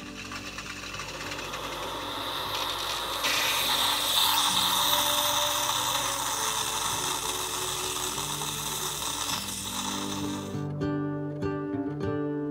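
Pod coffee machine brewing into a glass mug: its pump buzzing with a hiss of steam, getting louder about three seconds in and stopping suddenly near the end, over background music.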